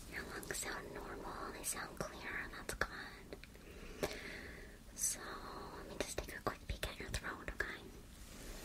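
A person whispering, with short sharp clicks scattered through it, most of them bunched together near the end.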